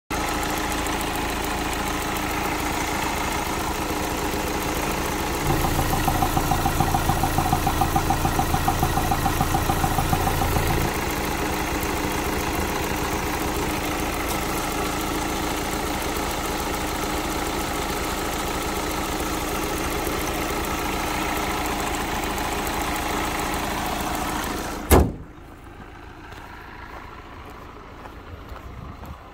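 Hyundai Avante's four-cylinder CRDi common-rail diesel engine idling steadily, heard from the open engine bay. A few seconds in it grows louder with a pulsing beat for about five seconds, then settles back. About three seconds before the end it stops abruptly at a sharp click, leaving faint outdoor background.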